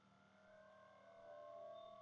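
Near silence: faint room tone with a low steady hum, and a faint wavering tone that swells briefly about one and a half seconds in.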